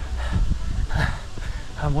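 A tired runner's short, breathy exhalations, a few huffs of breath and laughter, over a low rumble of wind on the microphone; a word of speech starts near the end.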